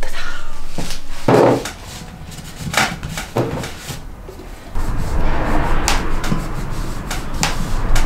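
Knocks and clatter of objects being handled and set down on a wooden workbench, with a few separate sharp knocks in the first half and a stretch of continuous rubbing and scraping from about halfway.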